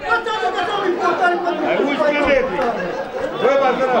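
Several people talking over one another in loose chatter.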